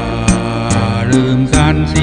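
A man singing an old Thai love song over an instrumental backing with bass and a steady beat, his voice wavering with vibrato on a held note near the end.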